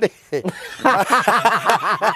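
Two men laughing heartily, in short pitched bursts that build after a brief pause and are strongest from about a second in.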